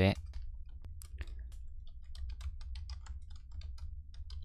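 Typing on a computer keyboard: irregular key clicks, several a second, over a low steady hum.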